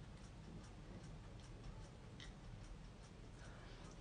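Near silence: faint room tone with light ticks, about two or three a second.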